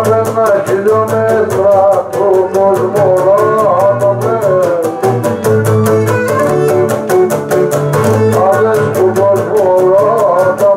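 Cretan lyra and laouto playing a syrtos: the laouto strums an even, steady rhythm under a bending melody, with a man singing into the microphone.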